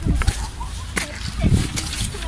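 Handling noise on a handheld camera: low rumbling thumps at the start and again about a second and a half in, with a sharp click about a second in.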